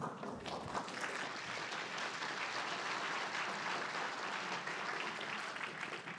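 Audience applauding: many hands clapping at a steady level, dying away near the end.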